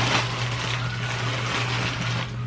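Plastic bag packaging rustling and crinkling as it is handled and opened, over a steady low hum.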